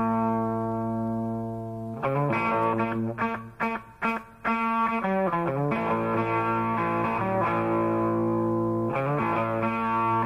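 Distorted electric guitar playing on its own at the start of a blues-rock track: long held notes, broken about two to five seconds in by a few short, choppy phrases, then long held notes again.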